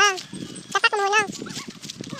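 An animal calling: a short call right at the start and two longer calls about a second in, each rising then falling in pitch.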